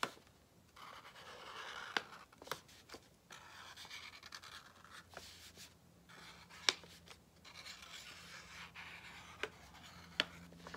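Drawing on a paper plate: soft, scratchy strokes of a pen or pencil tip on paper in several stretches, with a few sharp little taps in between.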